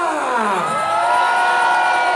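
Electronic dance-music synth effect through the club sound system: a steep downward pitch sweep, then a sustained synth chord that swells up and holds.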